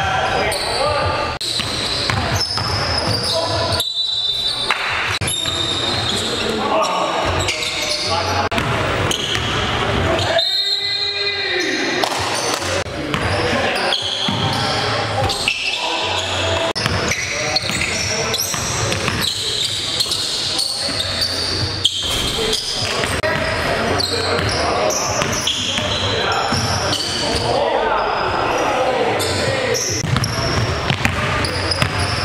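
Live sound of an indoor basketball game: a basketball bouncing on a hardwood gym floor, with players' voices calling out indistinctly, echoing in a large gymnasium.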